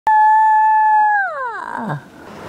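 A steady high tone that starts abruptly, holds for about a second, then slides smoothly down in pitch and fades out.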